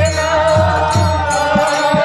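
Sankirtan: a harmonium accompanies a chanted devotional melody over a steady, regular low beat.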